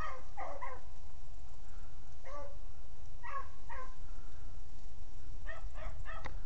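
A pack of beagles baying while running a rabbit's track: a few cries at the start, scattered single cries through the middle, and a quicker run of cries near the end. A steady low rumble runs underneath.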